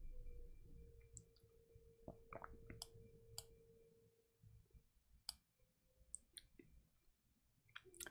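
Near silence: room tone with a faint steady tone in the first half and about eight faint, irregular clicks scattered through it.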